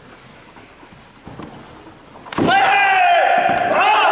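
A sharp impact about two seconds in as the karate fighters clash, followed at once by a loud, long shout: a kiai, with the referee's call joining in.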